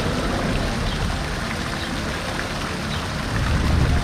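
Outdoor pedestrian-street ambience: a steady wash of noise with faint voices in it, and a deeper rumble near the end.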